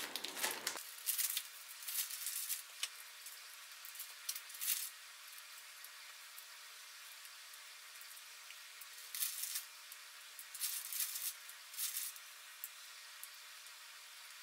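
Faint, scattered crackles and rustles of green beans being broken up by hand and dropped into a bowl of oats, with the crinkle of the plastic bag they came from, over a faint steady hiss.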